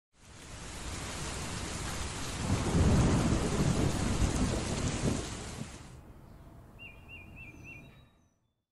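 Heavy rain with a rumble of thunder that builds to its loudest around the middle and then dies away, leaving only a light hiss. Near the end comes a brief wavering high-pitched tone.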